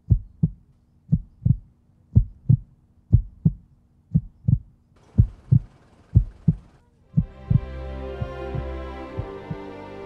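Heartbeat thumping in lub-dub pairs, about one beat a second. A faint hiss joins about halfway through, and sustained music comes in near the three-quarter mark, with the beats continuing under it.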